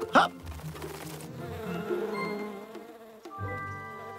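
Cartoon bee's wings buzzing in a wavering hum, over background music. A sharp stroke comes right at the start, and held music notes come in about three-quarters of the way through.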